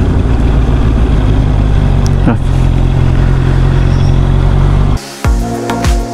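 Motorcycle engine running steadily while riding, heard from on the bike, with a brief falling tone about two seconds in. About five seconds in it cuts off abruptly and background music with a beat takes over.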